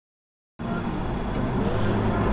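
Steady low rumble and hiss inside a stationary car, cutting in suddenly about half a second in after dead silence.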